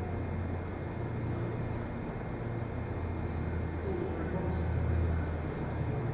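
Steady low hum of an empty indoor hall's room ambience, with faint distant voices.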